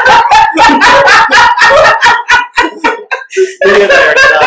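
Several people laughing hard together, loud, in quick ha-ha pulses about five a second, easing off briefly a little after three seconds in and then picking up again.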